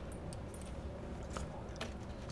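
Quiet room with a low steady hum and a few faint small clicks, three of them spread across the two seconds.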